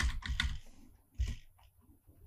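Computer keyboard keys being typed: a quick run of keystrokes in the first half-second, then one more keystroke a little over a second in.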